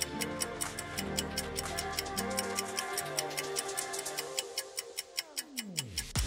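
Quiz countdown-timer ticking, several ticks a second, over background music. Near the end the music slides sharply down in pitch, winding down as the timer runs out.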